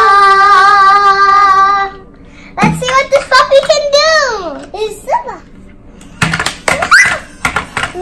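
Children shouting a long, held cheer together, followed by excited children's voices and exclamations.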